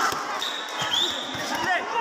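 Spectators talking and shouting in a boxing hall, with dull thuds from the boxers in the ring.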